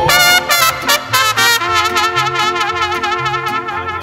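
Mariachi band's instrumental trumpet interlude between sung verses. Two trumpets play a run of short, quick notes, then longer wavering held notes, over guitarrón bass notes on a steady beat with strummed vihuela and guitar.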